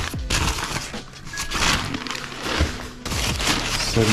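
Brown paper packing crinkling and rustling as hands dig through it in a cardboard box, in three or so bursts with short lulls between.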